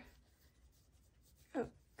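Faint scratching of a mechanical pencil writing on workbook paper, with one short spoken syllable near the end.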